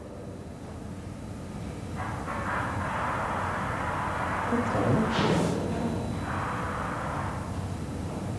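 Unidentified, muffled noises picked up through a directional boom microphone in an empty school hallway, described as strange sounds. A noisy rise begins about two seconds in, with a sharper burst about five seconds in.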